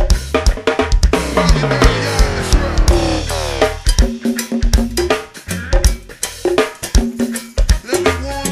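Go-go band music: drum kit and percussion hits over low bass notes, with a pitched sound that slides slowly downward for about two seconds, starting about a second in.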